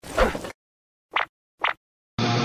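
Two quick cartoon pop sound effects, about half a second apart, following a short spoken line.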